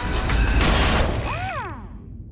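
Logo-sting sound effects of a clattering mechanical ratchet-and-gear noise with a loud crash-like burst. Several tones then sweep downward and everything fades out.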